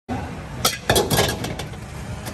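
Steel kitchen utensils clinking against plates and a wok: a quick run of sharp metal clinks in the middle of the stretch, over a steady rumble of road traffic.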